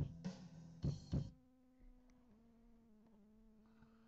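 Band music: a few last drum hits in the first second or so, then a single steady held note that steps slightly lower in pitch about two seconds in.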